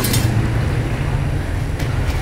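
Steady low rumble of outdoor background noise, with a short click right at the start and another near the end.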